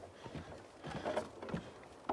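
Faint, irregular knocks and scuffs of someone climbing a wooden pole ladder, a few seconds apart.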